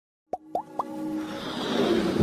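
Animated logo intro sound effects: three quick rising 'bloop' pops about a quarter second apart, then a whoosh with a held musical note that swells toward the end.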